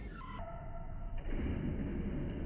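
Skateboard wheels rolling across a wooden floor: a faint, muffled low rumble with no clear knocks or landings.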